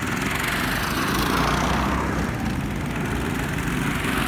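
Several go-kart engines buzzing as the karts race past, the pitch wavering as they rev, loudest about halfway through.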